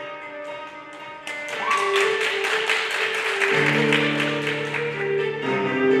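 Instrumental music, quiet at first, growing louder about a second in with quick rhythmic strokes over held notes, and a deeper bass part joining past the middle.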